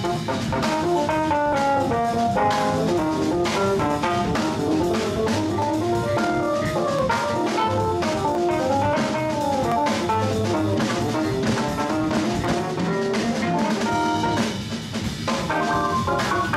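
Live jazz band playing: drum kit, piano and electric bass, with pitched melody lines moving over a steady beat. The music thins out briefly for about a second near the end.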